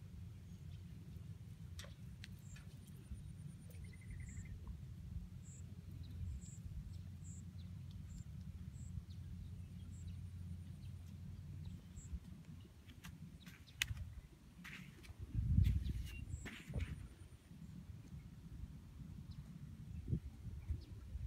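Open-air field ambience: a steady low wind rumble on the microphone, swelling into a louder gust about fifteen seconds in. Faint high chirps repeat about twice a second for a few seconds early on, with a few light clicks scattered through.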